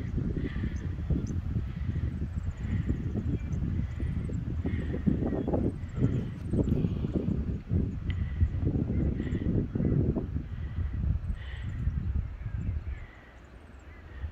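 Wind buffeting the phone's microphone in uneven gusts, easing briefly near the end. Faint bird chirps sound in the background, one of them repeating a little more than once a second.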